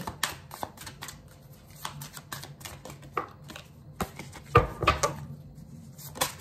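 Tarot cards being shuffled and handled, a run of light irregular clicks and flicks. About four and a half to five seconds in come a couple of louder knocks, as of the deck tapped on the wooden table.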